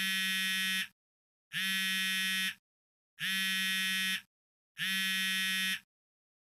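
Mobile phone ringing with an incoming call: four buzzing rings, each about a second long at one steady pitch, with a short pause between them.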